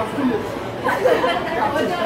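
Several people talking at once: overlapping chatter of voices in a large indoor room.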